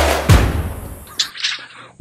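Background music with heavy drum beats and a deep bass that fades out about a second in.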